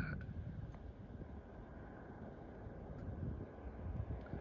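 Low, steady rumble of wind on the microphone.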